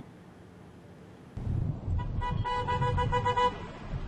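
A motor vehicle's low rumble comes in about a second in. For about a second in the middle a horn sounds on one steady pitch.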